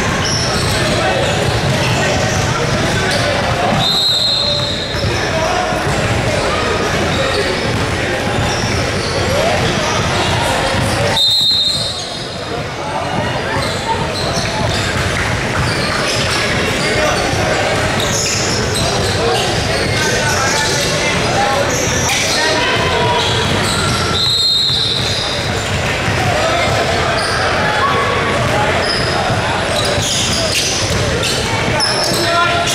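Basketball game in a large gym: a basketball bouncing on the hardwood floor under steady crowd and player chatter, with three short blasts of a referee's whistle, about 4, 11 and 24 seconds in.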